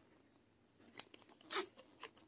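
Faint handling noise close to the phone's microphone: a sharp click about a second in, then a brief scratchy rustle half a second later.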